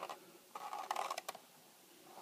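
Needle and elastic cord pulled through a punched hole in a leather cover. A faint scrape lasting under a second, with a few small clicks near its end.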